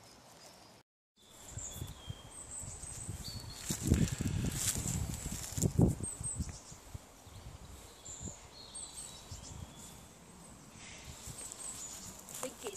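Woodland ambience: birds chirping and whistling on and off, with rustling and two louder low bumps about four and six seconds in. The sound drops out completely for a moment about a second in.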